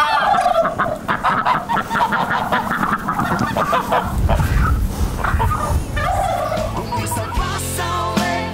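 A flock of domestic geese cackling and honking, many rapid calls overlapping, with a low rumble joining about halfway through.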